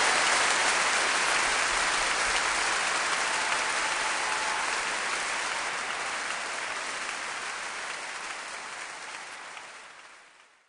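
Large concert audience applauding, the level falling steadily throughout and dropping away near the end.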